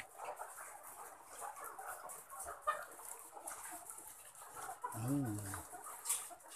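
A flock of caged white ready-to-lay hens clucking softly, many overlapping calls at a low level.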